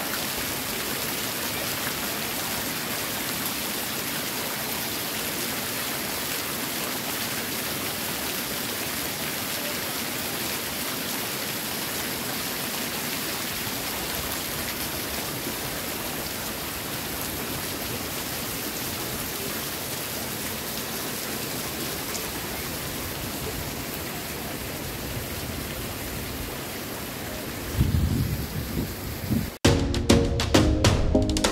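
Spring water running down a hollowed-log wooden trough and pouring off its end in two streams, a steady splashing rush. Near the end a few loud low thumps break in.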